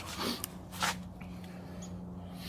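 Camera handling: a few short, soft rustles in the first second over a steady low hum.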